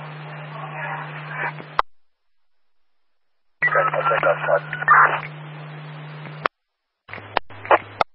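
Police scanner radio traffic: three short two-way radio transmissions of garbled voice. Each cuts in and out abruptly and ends with a squelch click, with a steady low hum under each transmission and dead air between them.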